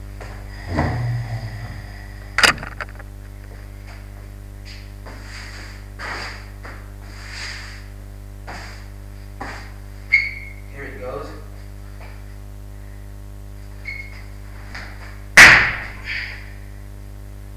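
Person performing backflips, landing with sharp thuds: three of them, the loudest near the end, with softer shuffling between, over a steady electrical hum.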